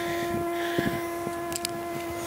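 A steady hum with even overtones, unchanging in pitch, with a few faint clicks about one and a half seconds in.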